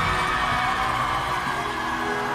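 Stage music holding long sustained chords, slowly getting quieter.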